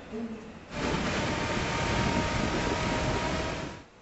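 Outdoor ambient noise, a steady rush with a faint high tone running through it. It starts about a second in and cuts off just before the end.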